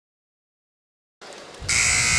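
Dead silence for about the first second, then basketball arena ambience cuts in, and just before the end a loud, steady buzzing arena horn starts sounding, typical of the horn that ends a timeout.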